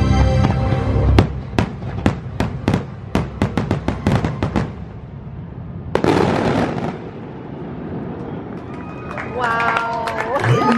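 Aerial fireworks going off: after about a second of show music, a rapid string of sharp bangs runs for several seconds. About six seconds in comes a sudden louder crackling burst, and music comes back near the end.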